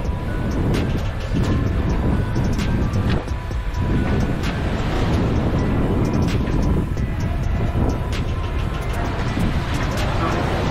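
Heavy wind rumble on the microphone on the open deck of a warship at sea, with scattered small clicks and knocks. Faint background music with a few steady tones runs underneath.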